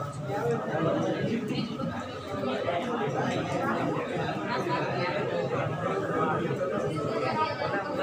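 Several voices talking over one another: steady murmur of indistinct chatter in a room.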